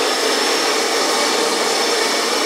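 Gas burner of a hawker stall's soup pot running with a steady rushing noise, a faint steady high whine above it.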